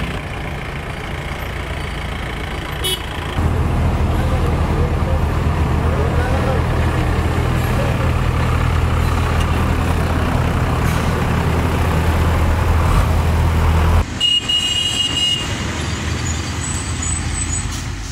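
Tata Starbus bus engine running with a steady low drone as the bus drives past, with people's voices. The sound changes abruptly about three-quarters of the way through.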